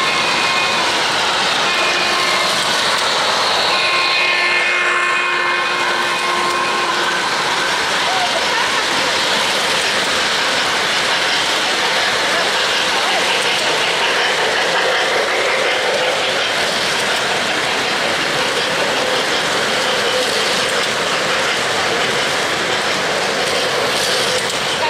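O-gauge model steam locomotive running past on three-rail track, its onboard sound system blowing a chime whistle in several blasts during the first seven seconds or so, over a steady background of hall noise.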